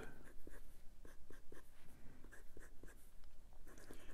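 A MaJohn T5 fountain pen's #6 steel calligraphy nib scratching on lined notebook paper in a quick run of short, faint strokes.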